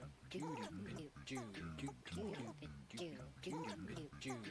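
Chopped, electronically processed voice fragments with gliding, bent pitch, recurring in a repeating stuttering pattern within an electronic spoken-word piece.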